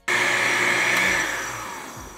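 Countertop blender motor running at full speed, blending a milk-based protein shake, then winding down and fading out after about a second.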